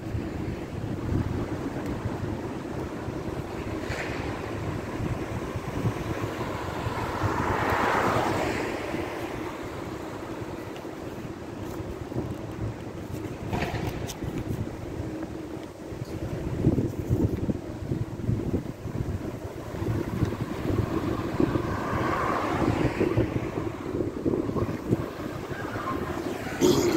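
Wind buffeting the phone's microphone over quiet street ambience, with a passing vehicle swelling and fading about eight seconds in and another swell near the end.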